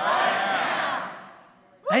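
Church congregation calling out and cheering together in response to the sermon, many voices at once, which fade away about a second and a half in.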